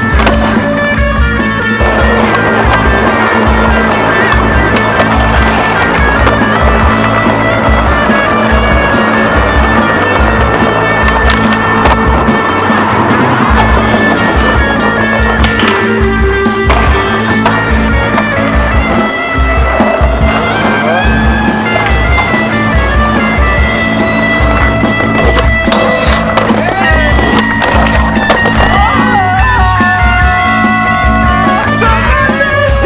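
Music with a steady beat, mixed with skateboard sounds: urethane wheels rolling on stone paving and the board clacking on takeoffs and landings.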